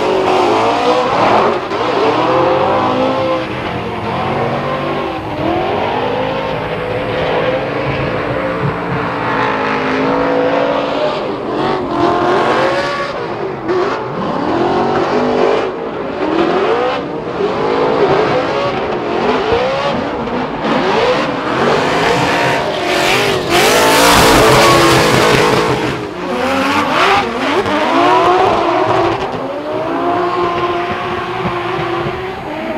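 Drift cars' engines revving hard, their pitch repeatedly sweeping up and down as the throttle is worked, over the screech and hiss of spinning tyres. There is a louder rush of noise about three quarters of the way through.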